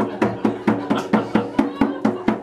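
Hand drum beaten with the bare hand in a steady rhythm, about four strokes a second, each with a short ringing tone.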